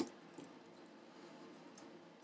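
Faint handling noise as an iMac LCD panel is shifted and pressed gently into its housing, with a couple of faint light ticks.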